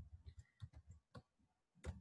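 Faint, irregular clicking at a computer, a quick run of small clicks in the first second and one more a little later, as a line of code is selected in a text editor.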